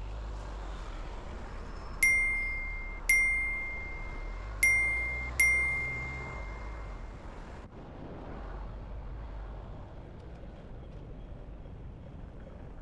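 A bicycle bell rung four times in about three and a half seconds, each single ding ringing out clearly and fading away. A low, steady traffic rumble runs underneath.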